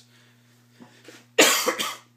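A man coughing: a short burst of two or three coughs about a second and a half in.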